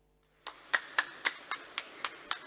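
One person clapping steadily, about four sharp claps a second, starting about half a second in after near silence.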